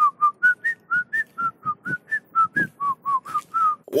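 A quick whistled tune of short staccato notes, about four a second, hopping up and down in pitch and stopping just before the end.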